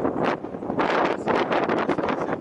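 Wind buffeting the microphone: a gusty rushing noise that keeps rising and falling.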